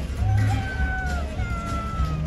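Music playing, with a long high note that slides slowly downward over a steady low accompaniment.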